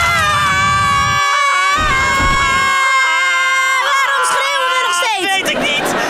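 Two people screaming in one long, held yell as they fall, their pitch sliding down and breaking off about five seconds in.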